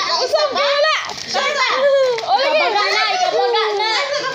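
Several children's voices calling out over one another, high-pitched and overlapping.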